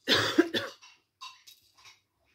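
A person coughing: a short, loud burst of coughing in the first second.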